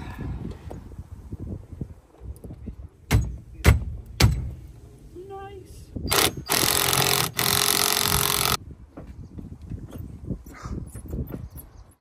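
Cordless drill running for about two seconds, with a short break partway, driving the centre fastener of an aftermarket steering wheel onto its hub. A few sharp knocks come a few seconds before it.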